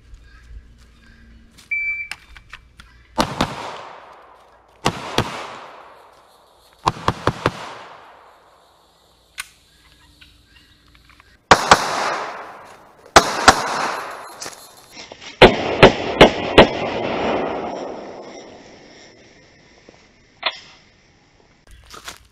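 A firearm fired in quick strings of one to five shots, about twenty in all. The strings come roughly every one and a half to four seconds, and each one leaves a long echo that dies away.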